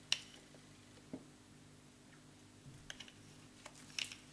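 A few light clicks and a soft knock as art supplies are handled on a tabletop: a sharp click right at the start, a duller knock about a second in, and small clicks near the end.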